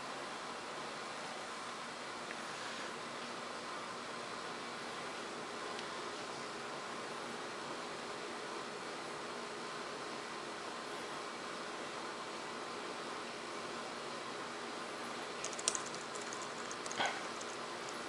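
Steady faint hiss of room tone, with two soft clicks near the end from keys pressed on a Lenovo G580 laptop keyboard.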